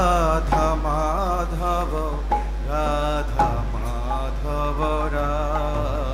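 Devotional kirtan singing: one voice chanting a bhajan in long, wavering held notes over a steady drone, with a couple of sharp percussion strikes in the middle.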